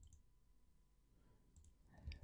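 Near silence: room tone, with a faint computer mouse click near the end.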